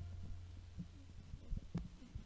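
Faint, scattered low thumps with one sharper knock about three-quarters of the way through, as the last low note of the song dies away at the start.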